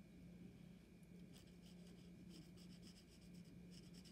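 Faint, quick strokes of a cotton swab loaded with soil paint brushing and dabbing on a paper sheet, over a low steady room hum.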